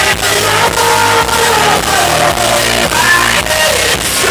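Live pop performance over a club PA: a loud dance-pop track with a steady beat and deep bass, and a man singing a gliding melody line over it.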